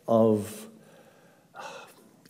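A man speaks one short word, pauses, then draws a short audible breath in about a second and a half in before going on.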